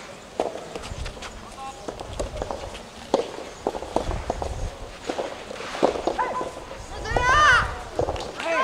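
Scattered footsteps and light knocks on an outdoor tennis court between points, with low rumble underneath. About seven seconds in, a person gives a loud call with a rising-and-falling pitch.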